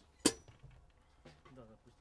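A single sharp stick strike on an acoustic drum kit, ringing briefly, followed near the end by quiet talking.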